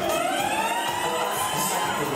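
A siren-like wail over party music: it rises in pitch during the first second, then holds steady.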